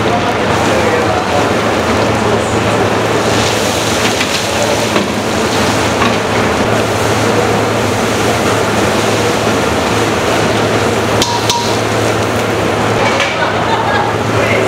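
Steady mechanical din with a low hum from an industrial stir-fry kettle whose motor-driven scraper arms turn through the food, with a few light clinks.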